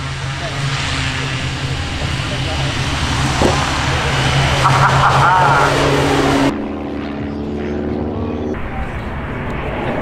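Draco's turboprop engine and propeller at takeoff power, growing louder over the first six seconds with a whine that rises in pitch as the plane lifts off and climbs. About six and a half seconds in it cuts off suddenly to a different, steady engine hum.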